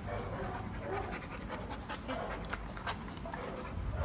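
A bully-breed puppy panting.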